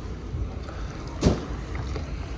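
Low, steady outdoor rumble with no voices, broken by a single sharp knock a little over a second in.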